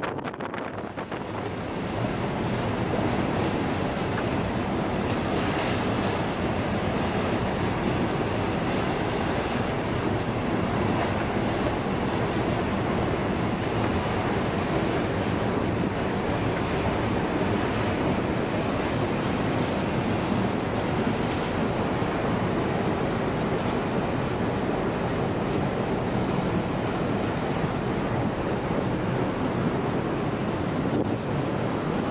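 Steady rushing noise of a ship moving through sea ice, mixed with wind on the microphone. It builds over the first two seconds, then holds even throughout.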